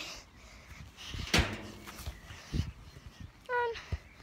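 A football kicked with a sharp thud about a second and a half in, followed a second later by a duller thump as the ball lands or hits something. A short voiced exclamation comes near the end.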